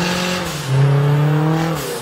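Nissan Juke's turbocharged MR16DDT 1.6-litre four-cylinder accelerating hard, its pitch climbing through the gears. An upshift drops the revs about half a second in, and another comes at the very end.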